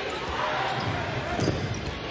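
Basketball game sound: crowd noise with the ball bouncing on the court.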